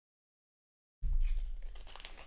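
Crumpled foil wrapper crinkling as it is handled and set down, starting suddenly about a second in with a low thump.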